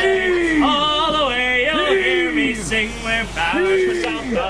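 Ship's crew chanting a hauling call together, a drawn-out rising-then-falling 'heave' from several voices about every one and a half to two seconds, keeping time as they haul on a line to set a sail.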